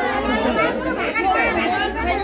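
Several voices talking over one another, with a woman speaking close by.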